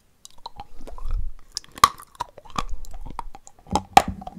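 Close-miked chewing of a spoonful of white chalky paste: wet clicks and crackles, a sharp crunch a little under two seconds in, and denser crunching near the end.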